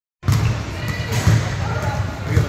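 Basketballs bouncing on a court, a few irregular low thuds, with voices in the background.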